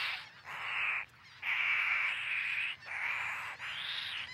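Brown pelican nestlings giving a series of hoarse, hissing calls, each half a second to over a second long, with short breaks between them.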